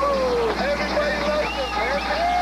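Several voices shouting and yelling over one another, with long held, wavering cries rather than clear words, over a steady low hum.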